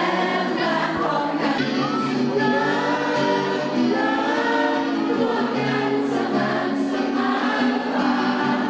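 A group of many voices singing a song together, choir-like, with long held notes.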